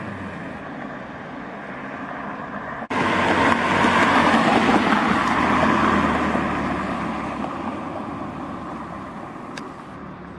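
A Ferrari 488's engine fading as the car drives away. After a sudden cut, a Škoda Octavia's engine and tyre noise come in loud, peak a second or two later, and slowly fade as it pulls away.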